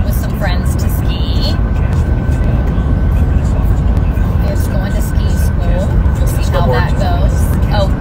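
Steady low road and engine rumble inside a moving car's cabin, with a few brief, quiet snatches of voice.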